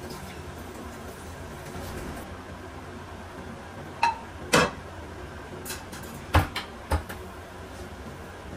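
A ceramic plate clinks, with a short ring, as it is set into a dish-drying rack about halfway through, then knocks a second time. A few more knocks follow as the kitchen cabinet door over the rack is shut.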